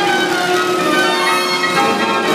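The carousel's 65-key Bruder Elite Apollo band organ playing a tune, pipes and bells sounding together.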